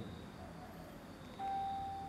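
Quiet room tone, then, about one and a half seconds in, a single steady beep-like tone lasting about half a second.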